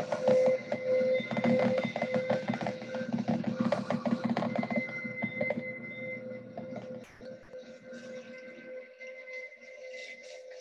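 Slow meditation background music held on a steady sustained tone. For about the first seven seconds a dense layer of rapid clicks with a low hum lies over it, then fades away.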